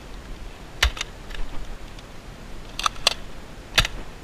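Nerf N-Strike Elite Strongarm blaster being worked and fired: a single click about a second in, a quick pair of clicks near three seconds as the priming slide is pulled back and pushed forward, then the sharper click of the dart being fired just before the end.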